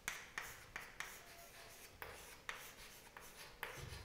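Chalk writing on a chalkboard: a series of faint, short, irregular taps and scratches as the letters are written.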